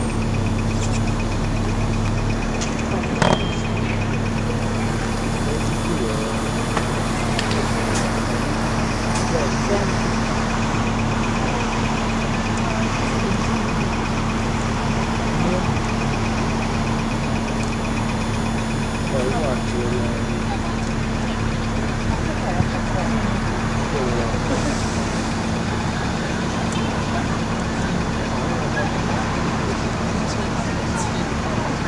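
A bus engine runs with a steady low hum amid city traffic noise, heard from the open top deck of the bus. There is a brief click about three seconds in.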